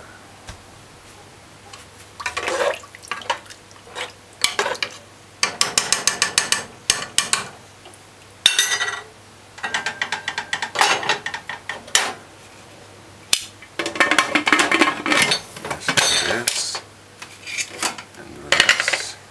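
Metal spoon clinking and scraping against an aluminium pressure cooker pot of liquid stew, in short bursts, then the cooker's aluminium lid clanking and scraping as it is fitted and closed.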